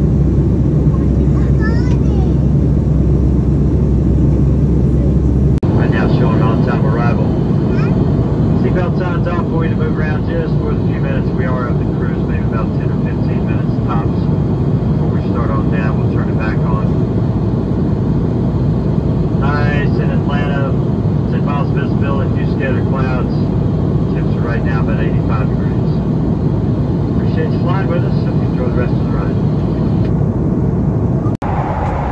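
Steady cabin drone of a Boeing 757-200 in cruise, from engine and airflow noise; its deepest hum drops away about six seconds in. From then on, indistinct voices of people talking in the cabin run over the drone.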